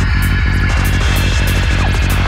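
Dark psytrance at 192 BPM: a loud, heavy rolling bassline under a steady beat, with hi-hats ticking about three times a second.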